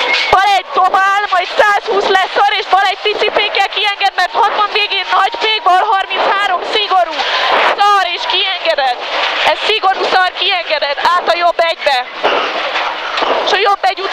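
Mostly speech: a co-driver calling rally pace notes in quick succession, with the car's engine and road noise beneath.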